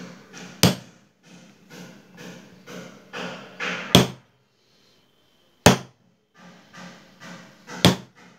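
A metal screwdriver prying and scraping at the oil seal in the centre of a motorcycle magneto stator plate, in repeated short strokes. Four sharp metallic knocks cut through, and the scraping stops for about a second past the middle.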